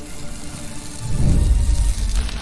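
Produced intro music and sound effects: a hissing build-up, then a deep bass hit about a second in that is the loudest part.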